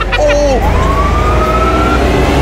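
A short vocal 'ooh', then a Sherp ATV running on the road, a steady low rumble under a whine that rises smoothly in pitch for about a second and a half as it pulls along.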